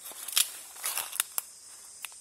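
Footsteps rustling and crackling through dry leaf litter and twigs on a forest floor, with a handful of short, sharp crackles in the first second and a half.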